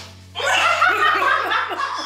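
People laughing hard, breaking out about half a second in after a brief lull.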